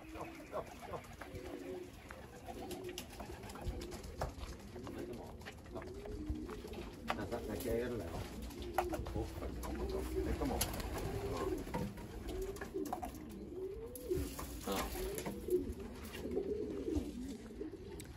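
Racing pigeons cooing in the loft, many overlapping coos going on continually, with a few faint clicks scattered through.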